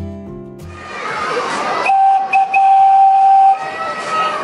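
A single long whistle tone, held steady for about a second and a half before it stops suddenly, over outdoor background noise; the tail of acoustic guitar music ends at the start.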